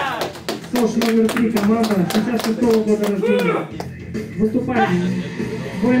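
Music with a voice over it, and a quick run of hand claps through roughly the first three and a half seconds.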